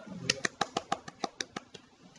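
A quick run of about a dozen sharp clicks, some seven a second, starting with a brief low hum.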